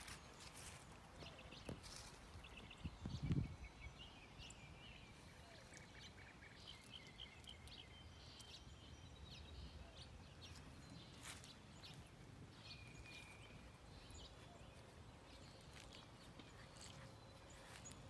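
Faint outdoor ambience with scattered small bird chirps and calls. A brief low rumble comes about three seconds in.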